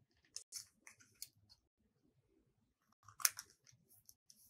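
Scissors cutting green craft paper: a few short snips in the first second and a half, then a louder cluster of cuts a little after three seconds in.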